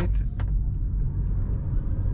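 Hyundai IONIQ 5 RWD electric car accelerating hard from low speed, heard inside the cabin: a steady low rumble of tyre and road noise with a faint rising whine.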